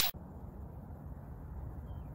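Steady low rumble of outdoor background noise, starting just as an intro whoosh cuts off.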